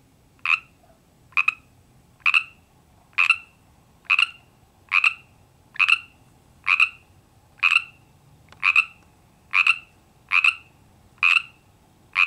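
A frog croaking, a lone male calling for a mate from his pond: about thirteen short croaks, evenly spaced at roughly one a second.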